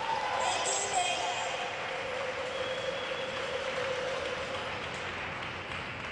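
Applause and voices from a small audience.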